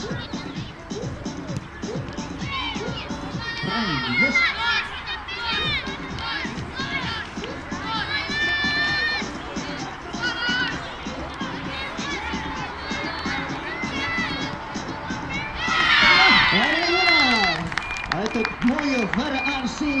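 A crowd of children shouting and calling over one another, with a louder burst of excited shouting about sixteen seconds in; music plays in the background.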